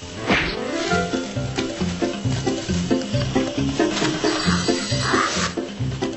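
A tiger roaring, with a loud falling cry about half a second in, over background music with a steady repeating beat.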